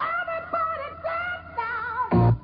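Music with a singing voice holding long notes with a wide vibrato, the melody stepping down to lower notes about one and a half seconds in.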